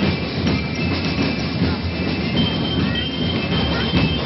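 Steady, loud street-parade din: a percussion band drumming, heard through a dense low rumble of crowd and street noise.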